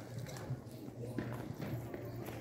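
Faint shuffling footsteps of a crowd of schoolchildren on paved ground, with scattered light taps and faint voices behind.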